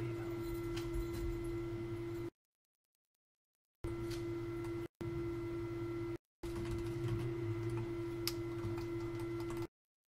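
A steady hum with a constant tone over it, cutting out completely to dead silence four times, the longest for about a second and a half. A few faint clicks sound over the hum.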